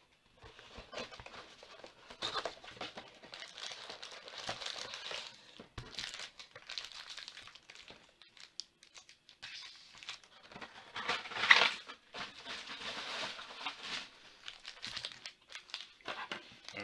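Packaging of a 2020 Panini Prizm Football hobby box crinkling and rustling as the box is opened and its wrapped card packs are handled and stacked, in irregular bursts, the loudest about eleven seconds in.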